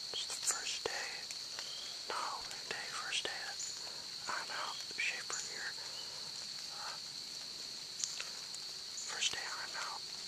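Steady high-pitched trilling of crickets, with scattered short, soft sounds over it.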